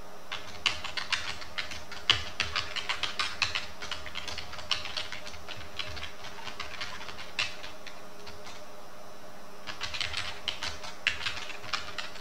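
Typing on a computer keyboard: quick runs of keystroke clicks, thinning out midway, a short lull, then another run of keystrokes near the end.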